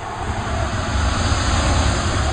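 A loud rushing, rumbling noise with a deep bass rumble that builds up and holds steady.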